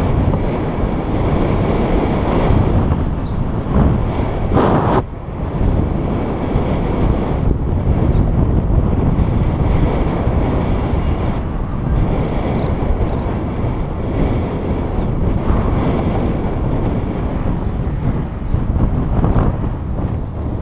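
Wind buffeting a body-worn action camera's microphone while riding a bicycle down a city street. It is a steady, heavy rumble with a brief louder gust about five seconds in.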